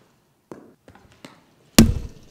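A few faint taps, then a single loud, heavy thump near the end.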